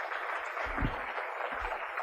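Audience applauding steadily at the end of a talk.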